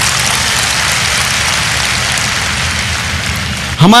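Large crowd applauding steadily, a loud even clatter of many hands.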